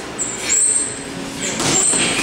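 Boxing gym sounds during sparring: a short, high-pitched squeak repeating about once a second over a busy background with voices.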